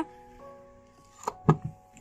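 Faint held tones, then two short sharp knocks about a second and a half in.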